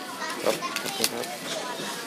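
Indistinct talk of people in the background, no clear words, with a few light knocks.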